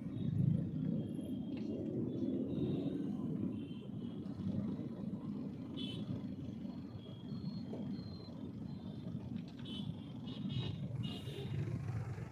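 Steady low rumble of a car moving through city traffic, heard from inside the car, with faint higher tones from the surrounding traffic now and then.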